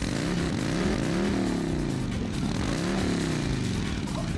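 Motorcycle engine revving: the pitch climbs and drops back twice.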